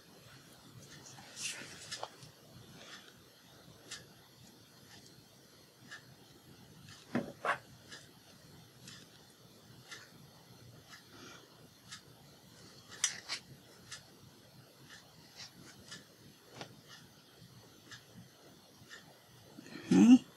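Quiet handling of craft paper on a cutting mat: soft rubbing and rustling with a few light taps, the clearest about a second and a half in, at about seven seconds and at about thirteen seconds.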